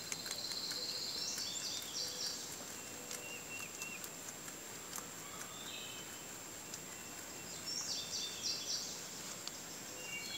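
Rabbits chewing foraged leafy greens, with faint crunches and clicks throughout, while a songbird sings short chirping phrases near the start and again about eight seconds in.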